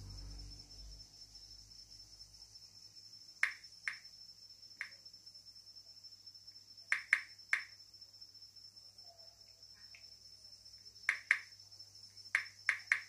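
A steady, faint, high-pitched drone with sharp clicks in small groups of two or three, about 3½, 7 and 11 seconds in.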